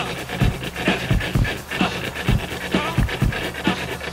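English bulldog panting in quick, irregular breaths, with music playing faintly underneath.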